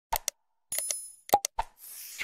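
Sound effects of an animated like-subscribe-share button graphic: quick pops paired with mouse clicks, a short high bell ring about three-quarters of a second in, more pops and clicks, then a whoosh near the end.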